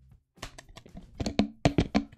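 Plastic bottles being handled and shaken out as the last of the water is emptied. There are irregular sharp clicks and knocks, sparse at first, then a quick cluster of louder ones in the second half.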